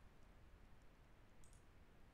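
Near silence: room tone, with a faint double click of a computer mouse about one and a half seconds in.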